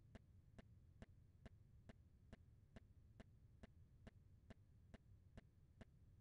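Near silence: a faint low hum with faint, evenly spaced ticks a little more than twice a second, recording background noise.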